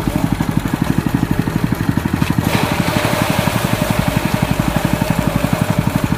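Diesel engine driving a rice thresher, running steadily with a fast, even beat. About two and a half seconds in, a louder rushing whir joins it as rice stalks are fed into the threshing drum.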